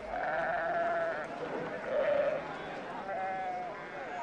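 Bleating livestock: three quavering calls, the first the longest, about a second apart.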